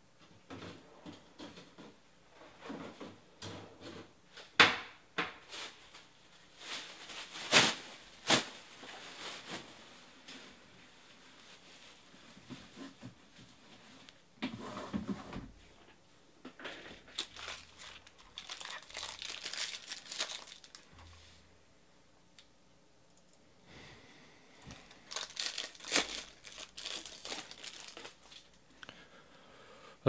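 Foil wrappers of trading-card packs crinkling and being torn open, in irregular bursts of sharp crackling with short pauses.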